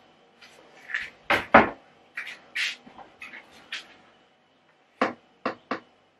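Kitchen cupboard doors opening and closing, with knocks and clatter of things being moved: two loud knocks about a second and a half in, smaller clicks after, and three sharp clicks near the end.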